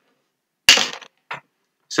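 A sharp knock, then a shorter, fainter knock about half a second later.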